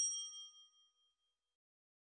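Bright bell-like ding sound effect for a notification bell being clicked, ringing with several clear tones and fading out over about a second.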